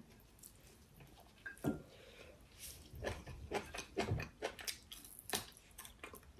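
Faint chewing and mouth sounds of a person eating close to the microphone: scattered small clicks and soft smacks, starting about a second and a half in.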